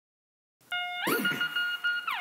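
Start of a rap song's beat: after a brief silence, an electronic lead tone holds a beeping note, then slides up to a higher note and holds, while a voice shouts "ayy".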